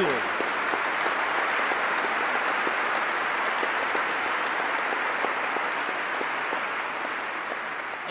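Audience applauding steadily, the clapping easing off slightly near the end.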